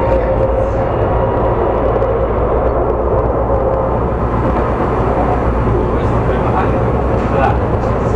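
Steady running noise heard inside a moving tram car: a continuous low rumble of the wheels on the rails. A faint, steady whine fades out over the first few seconds.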